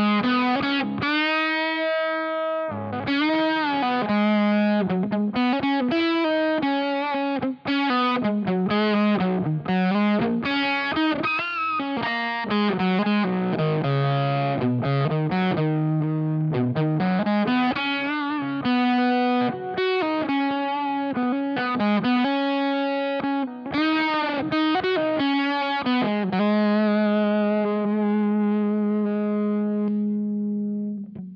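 Electric guitar through a Boss FZ-2 Hyper Fuzz pedal in its Fuzz 1 mode, playing single-note lead lines with string bends and sustained notes, heavily fuzzed. It ends on a long held note.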